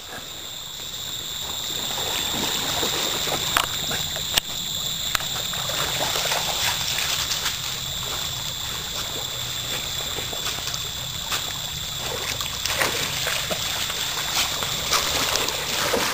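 Muddy creek water flowing and splashing as a dog swims through it, with a steady high-pitched tone in the background and a couple of sharp ticks about four seconds in.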